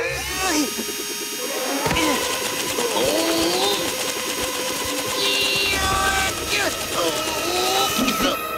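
Wordless cartoon character sounds, voice-like calls that glide up and down in pitch, over background music.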